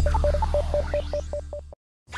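Electronic logo-sting music: a steady low bass under a quick string of short, high electronic beeps. Everything cuts off abruptly shortly before the end, leaving a brief silence.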